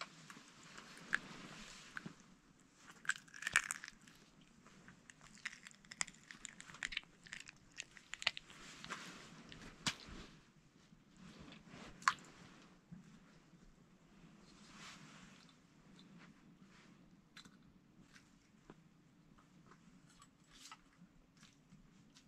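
Faint, scattered crunches and clicks of hands handling small ice-fishing gear on the ice, with a few sharper clicks, the loudest around ten and twelve seconds in.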